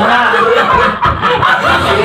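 People snickering and chuckling.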